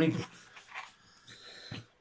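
Faint handling of a long latex modelling balloon, with a brief thin high squeak of the rubber a little after a second in.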